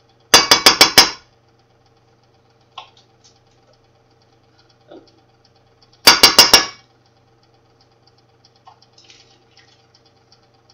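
A knife chopping up butter in quick bursts of sharp clinking strikes: about five fast hits shortly after the start and four more about six seconds in.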